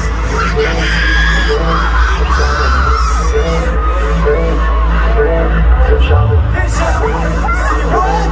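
Loud live K-pop dance music over an arena sound system, with heavy bass and a steady repeating beat, and an audience cheering over it.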